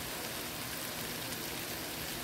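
Chicken and pechay cooking in a copper-coloured nonstick pan, with a steady sizzle. The heat is high enough that the cook fears it will burn the bottom of the pan.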